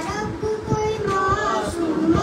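A boy chanting a noha, a mourning lament, into a microphone, holding long notes, over repeated dull strokes of hands beating on chests (matam).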